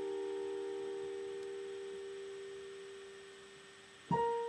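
A held piano chord ringing on and slowly fading away.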